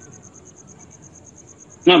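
Faint insect chirping: a thin, high-pitched trill of rapid, even pulses over low room hiss in a pause. A man's voice starts just before the end.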